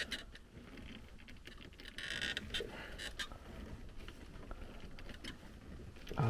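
Faint handling noise: hands rustling and scraping among a furnace's wiring and plastic fittings, with small clicks and a brief scratchy burst about two seconds in.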